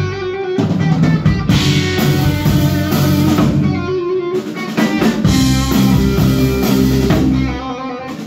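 Live rock band playing: electric guitars, bass and drum kit, loud and continuous.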